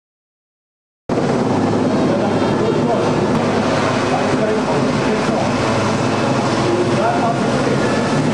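Two helicopters flying low overhead: loud, steady rotor and engine noise that starts abruptly about a second in and stops just before the end, with indistinct voices mixed in.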